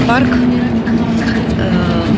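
City bus running along the road, heard from inside the cabin: a steady engine and drivetrain hum holding one pitch over a low road rumble.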